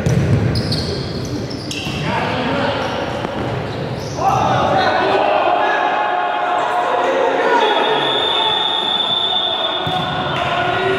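A futsal ball thudding on the sports-hall floor in the first seconds, then, from about four seconds in, louder sustained shouting from players echoing in the hall.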